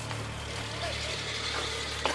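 A motor vehicle engine running steadily, a low continuous rumble under general outdoor noise.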